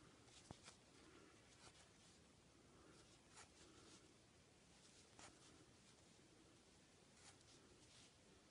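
Near silence with a handful of faint scratchy ticks, a few seconds apart: a metal crochet hook catching and pulling yarn through stitches.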